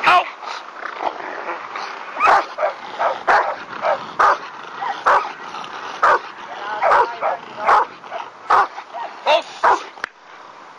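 A Rottweiler barking repeatedly at a protection-training decoy, one loud bark about every second from about two seconds in.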